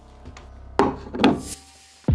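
Boxed kitchen utensils and a wooden cutting board handled on a wooden table: two knocks a little under a second in, then a brief scraping rub.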